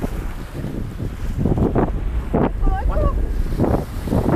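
Strong wind buffeting the microphone over the rush of water along a sailboat's hull as it runs downwind in rough sea, with several louder surges of waves washing and splashing. A brief voice sounds about three-quarters of the way through.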